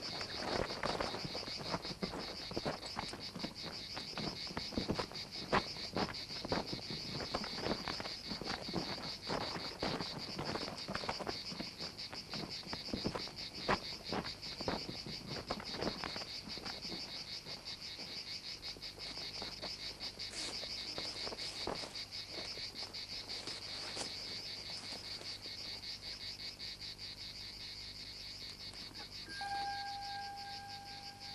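A steady, high-pitched chorus of insects chirring throughout. Over it, for about the first sixteen seconds, come irregular scuffs and thuds of movement over dry, dusty ground. Near the end a steady, whistle-like tone sets in.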